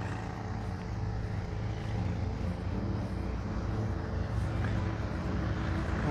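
Road traffic: a steady low engine and tyre hum from passing vehicles, swelling slightly about two seconds in.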